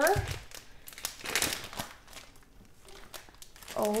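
Clear plastic bag around a wax melt bar crinkling as it is handled, in a run of short rustles that grow quieter about halfway through.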